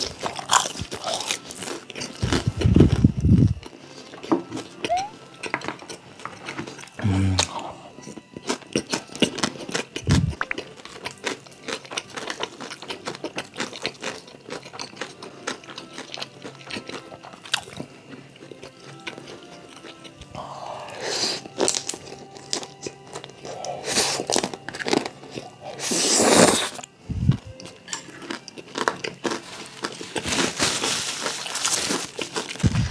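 Close-miked eating sounds: crisp crunching and chewing of pan-fried dumplings, then jajangmyeon noodles being slurped, over soft background music.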